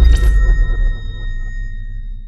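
Cinematic logo sound effect: a deep low boom with a brief sharp hit at the start and a few high, sonar-like ringing tones, all fading out over the two seconds.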